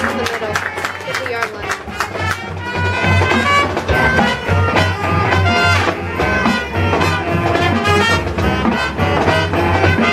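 Marching band playing a jazz-style brass arrangement on the field. Sharp drum strokes lead, then full brass chords come in and the band grows louder about three seconds in.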